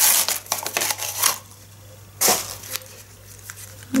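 Rustling, scraping handling noise as stacked silicone cupcake molds are worked and pulled apart, busiest in the first second or so, with one sharp louder noise a little after two seconds.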